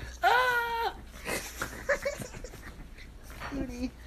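A pug making whiny vocal sounds while playing: one drawn-out, arching call about a quarter second in, then a few short yips.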